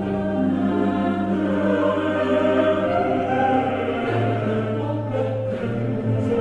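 Choral music: voices holding long notes over a low, steady drone.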